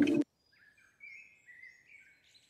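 An acoustic guitar beat cuts off just after the start, and faint bird chirps follow from about a second in.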